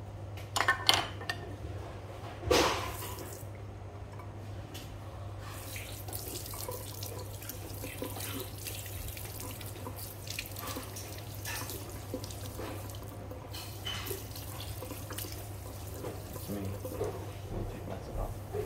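Water spraying from a handheld sink sprayer onto a foot over a basin, a steady hiss from about five seconds in. Two brief loud knocks come first, about one and two and a half seconds in.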